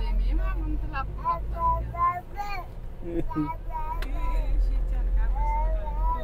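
Steady low rumble of a car driving, heard from inside the cabin, with quiet voices over it.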